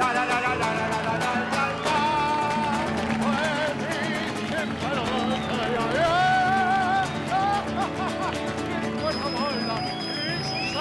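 Acoustic guitar strummed with a man singing a wordless held melody, as a comic song ends. A steady high tone enters near the end.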